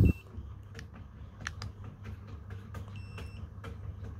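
Handheld infrared thermometer giving a short electronic beep about three seconds in as a temperature reading is taken. Under it are a low steady hum and a few faint clicks.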